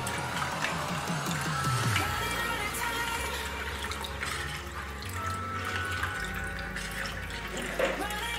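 Milk being poured from a plastic bottle into a steel pan in a steady stream, over background music.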